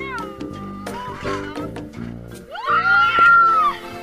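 Background music with a beat, over a roller coaster rider screaming. A short cry comes at the start, then one long high scream rises and holds for about a second in the second half, the loudest sound.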